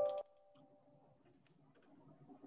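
A short chime of several tones cuts off just after the start, its ringing fading over the next second, with a few faint ticks; after that only quiet room tone remains.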